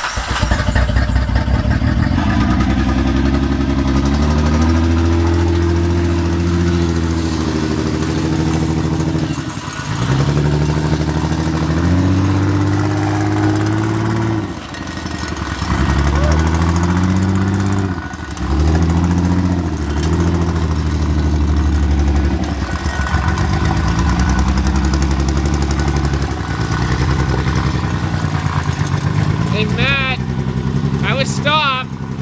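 2006 Honda Pilot's 3.5-litre J35 V6 running under load as the SUV is driven, its revs rising and falling in several long swells with brief drops in between.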